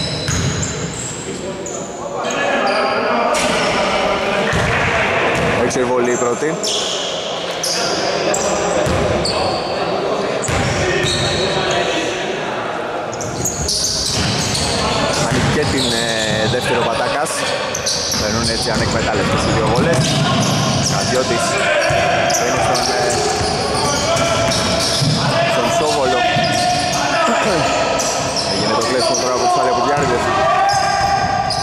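Basketball bounced repeatedly on the hardwood floor of a gymnasium during play, with voices mixed in.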